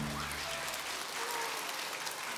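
Theatre audience applauding, fairly faint, as the last notes of a music cue fade out in the first moment.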